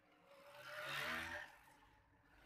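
A faint passing vehicle engine, swelling to a peak about a second in and then fading away.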